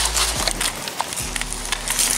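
Scattered knocks and rustles of a plastic bait bucket being handled and set down in grass and undergrowth, mixed with camera handling noise.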